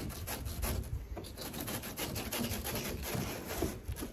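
Knife cutting along a zander's spine while filleting, scraping and crunching through the rib bones in a rapid, irregular run of small clicks.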